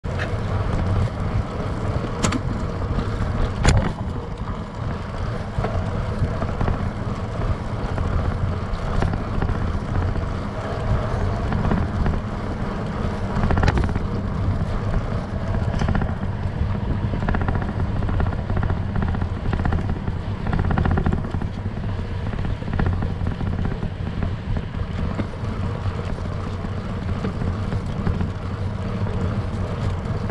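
Wind noise on a bike-mounted GoPro's microphone while cycling, over the steady low rumble of bicycle and trailer tyres rolling on a paved path. A few sharp clicks or knocks: two in the first four seconds and one about fourteen seconds in.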